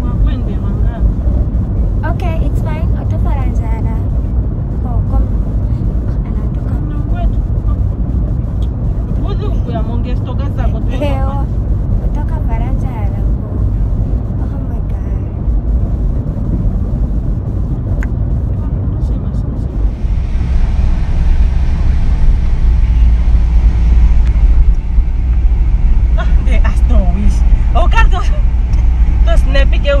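Car cabin noise while driving: a steady low rumble of engine and tyres, which grows louder and hissier about two-thirds of the way through, with bits of talk over it.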